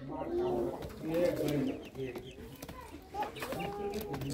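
Domestic pigeons cooing: short, low calls that come again and again.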